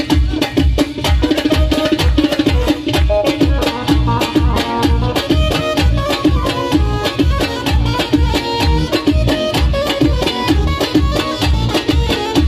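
Live Tajik folk music: a Korg synthesizer keyboard plays a melody over a steady drum rhythm of about two beats a second, with a flute joining partway through.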